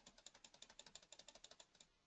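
Faint, rapid clicking from a computer's controls as the user pages through charts: about a dozen clicks a second for just under two seconds, then it stops.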